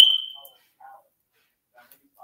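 A single short, high-pitched beep right at the start that rings and fades within half a second, followed by only a few faint soft sounds.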